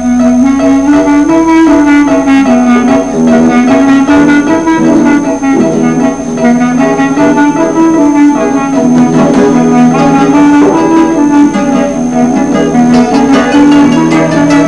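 A clarinet plays a flowing melody in its low register over a steady plucked guitar accompaniment.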